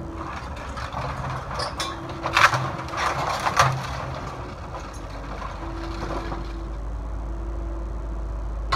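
Cat 308E2 mini excavator's diesel engine running while its bucket crunches and cracks old timber debris, with the loudest cracks about two and a half and three and a half seconds in. A low rumble from the machine grows in the second half.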